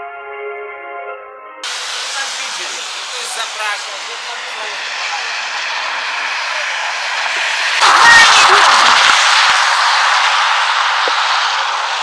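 Music with held tones from a village public-address loudspeaker, which cuts off abruptly about a second and a half in. It gives way to a steady outdoor rushing noise that builds, is loudest about eight seconds in with a few low thuds, and then eases off slightly.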